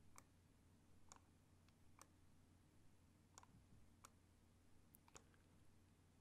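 Near silence broken by faint, scattered computer mouse clicks, about one a second, as mask points are placed and adjusted with the pen tool.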